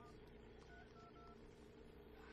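Faint mobile phone keypad tones: four short beeps as a number is dialled, one at the start and three in quick succession around the middle, over a steady low hum.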